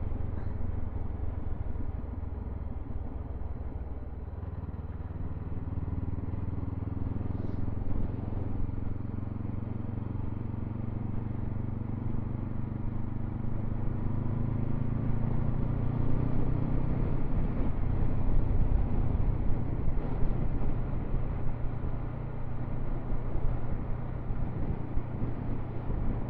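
Motorcycle engine running as the bike is ridden along the road, its note climbing gradually through the first half as it gathers speed, then holding steadier.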